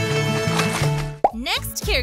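Music with a steady bass line that breaks off a little over a second in at a sharp pop. Quick gliding, warbling cartoon-style tones follow, as a sound effect sweeps in.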